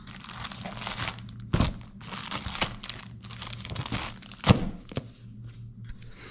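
Plastic packaging bags crinkling and rustling as parts are handled over a cardboard box, with a couple of thunks of things being set down, the loudest about four and a half seconds in. A steady low hum runs underneath.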